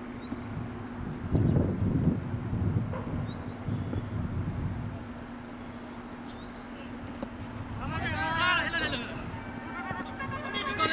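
Open-air ambience of a cricket ground: a steady low hum, a short low rumble early on, and a long wavering shout from a person near the end as the batsmen set off running.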